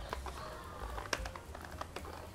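AmbuTech white cane in normal use, its tip tapping the ground: a few faint, light clicks, much quieter than the rattling smart cane, over a low background rumble.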